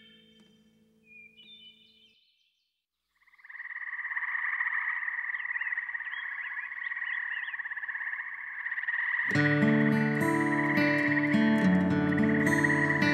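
Chorus of many frogs calling together, a dense steady trilling that starts about three seconds in after a short silence. Near the end, guitar-led new-age music comes in over it.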